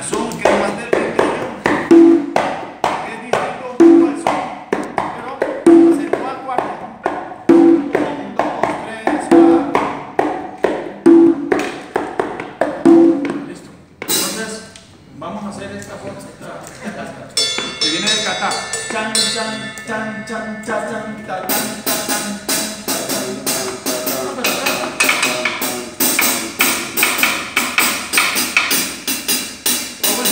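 Congas played by hand in a salsa tumbao, with a deep open tone recurring about every two seconds. After a short break about halfway through, a fuller and brighter section with stick strokes on cymbal and drums joins in.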